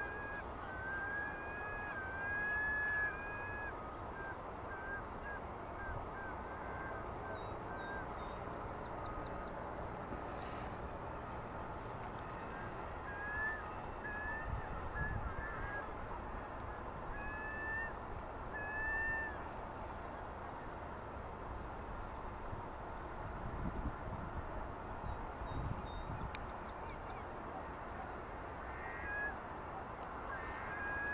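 Distant bird calls: runs of short, slightly rising pitched notes, one in the first few seconds, another from about twelve to twenty seconds in, and more near the end, over a steady background hiss.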